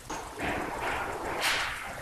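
A rushing, hissing noise in several swells, the loudest about one and a half seconds in.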